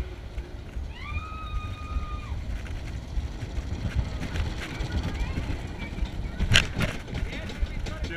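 Roller coaster car rolling along its track with a steady low rumble, a brief held high squeal about a second in, and a sharp loud clack at about six and a half seconds.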